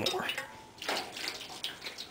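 Hot water poured from a cooking pot into a shallow metal baking sheet, a splashing pour that starts about a second in.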